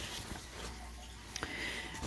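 Quiet room tone with faint handling noise from a phone and a sheet of paper being moved, and one soft click about a second and a half in.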